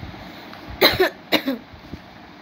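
A woman coughing a few times in quick succession, short sharp coughs about a second in.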